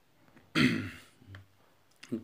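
A person clearing their throat once, loud and short, about half a second in, with a fainter low sound from the throat a moment later.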